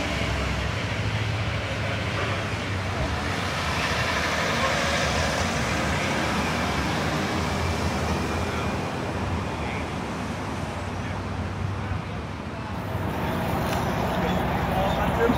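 Road traffic on a wet street: cars and a pickup truck driving by, with tyre noise. The sound changes shortly before the end.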